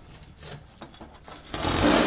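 A flat metal heat-shield sheet scraping as it is slid across a metal mesh table under a lifted wood stove. It comes as a rush of noise that swells about a second and a half in and is loudest near the end.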